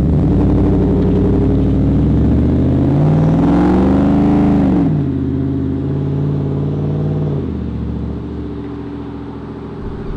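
Supercharged 5.0-litre V8 of a 2020 Ford F-150 pulling away under throttle. The engine note climbs for a couple of seconds, peaks just before halfway, drops sharply and holds lower, then fades as the truck drives off.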